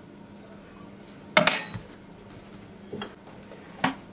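A metal kitchen utensil clinks once sharply against a dish or bowl about a second and a half in and rings with a high tone for over a second. A softer tap follows near the end.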